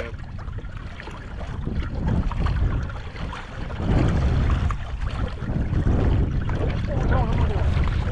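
Wind buffeting the microphone on open water: a gusty low rumble that grows louder about two seconds in and stays strong, over the wash of choppy water around a kayak.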